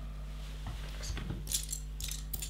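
Small plastic LEGO pieces clicking and rattling as they are handled on the table: a few light clicks, then a short cluster of clicks about one and a half seconds in.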